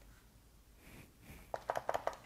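Near-silent room tone, then about a second and a half in, a quick run of five or six small plastic clicks from the keys of a handheld wireless keyboard as an app is clicked on.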